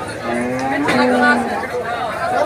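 A cow mooing once: a steady, low call lasting over a second, with a brief break about halfway through. The voices of a market crowd can be heard behind it.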